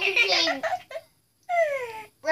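A high-pitched voice making wordless, drawn-out sounds that slide up and down in pitch. One stretch runs to about a second in, then after a short gap a single call falls in pitch near the end.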